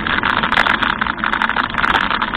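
Wind and road noise on the microphone of a camera mounted on a moving bicycle: a loud steady rush with rapid, irregular clicks and rattles as the bike rolls over the pavement.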